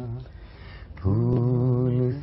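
A man singing slow, drawn-out lines of an Urdu song without words being clearly broken up: one long held note ends just after the start, and a new long held note begins about a second in.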